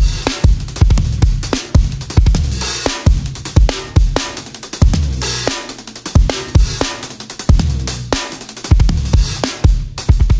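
Instrumental band groove led by a drum kit with Zildjian K Custom Special Dry cymbals: steady kick and snare strokes, cymbal hits, and a sustained bass line underneath that drops out briefly a couple of times near the middle.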